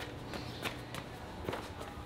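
A few faint, short knocks, about three, over a low steady hum of room tone.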